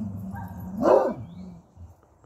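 A large dog barking once, loudly, about a second in, the bark dropping sharply in pitch at its end, over a low steady rumble that may be the dog growling.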